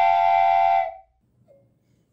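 Steam-whistle sound effect, a loud chord of several close pitches, held and then cutting off about a second in with a slight drop in pitch. It bleeps out a word, matching a 'REDACTED' caption.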